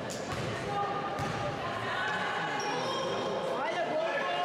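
Basketball being dribbled on an indoor court during play, mixed with players' and coaches' voices.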